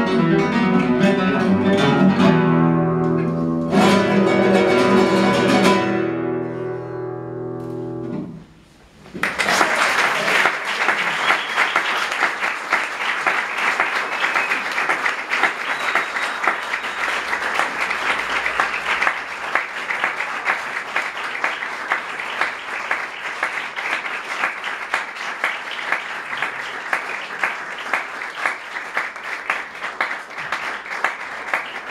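Two classical guitars play the closing bars of a piece, ending on a chord struck about four seconds in that rings and fades away. After a brief pause, an audience breaks into steady applause.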